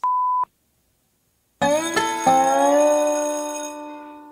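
A short censor bleep, a single steady tone about half a second long, then, after a second's gap, a held musical chord that slowly fades out.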